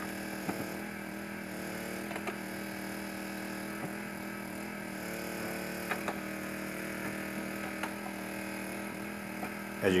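A steady low hum made of several even tones, with a few faint clicks scattered through it.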